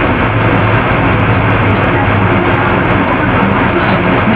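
Steady loud rushing noise with a low hum underneath. It stays level throughout and has nothing above a cutoff near 4 kHz.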